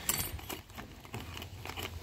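Faint rustling and small clicks of a hand rummaging in a cardboard box of parts, with a low steady rumble underneath.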